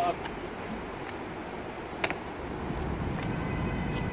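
Outdoor traffic rumble that grows louder in the second half, with one sharp knock about two seconds in.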